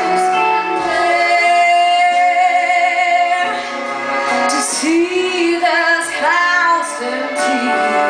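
Live song performance: a woman singing a slow ballad melody, with held notes and vibrato, over acoustic guitar accompaniment.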